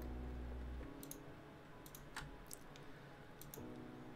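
A few faint, sharp clicks of a computer mouse, scattered over a couple of seconds while web pages are opened.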